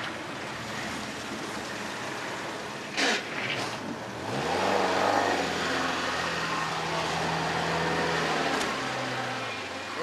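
Van engine running and driving up, rising in pitch about four seconds in and then holding steady, over outdoor background noise. A short loud noise comes about three seconds in.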